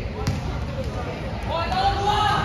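A basketball bounces once on the indoor court floor about a quarter second in, over the murmur of players and spectators in the gym. A voice calls out near the end.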